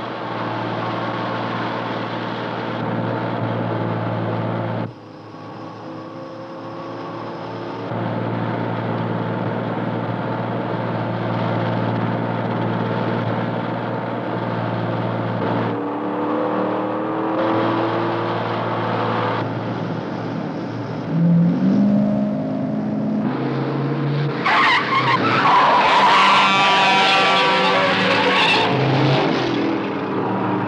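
Car engines running steadily at highway speed, with revs rising and falling past the middle. Near the end comes a loud squeal of tires lasting several seconds.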